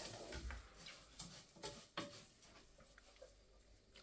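A few faint taps of a spoon stirring rice and vermicelli in a saucepan, dying away to near silence about halfway through.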